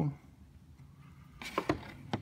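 A quiet second, then a short run of sharp clicks and taps about a second and a half in: small hand tools being handled and set down against a plastic instrument-cluster housing on a workbench.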